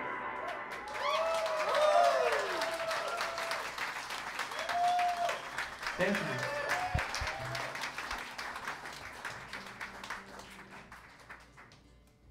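Audience applauding and whooping at the end of a song, the clapping thinning out and dying away near the end.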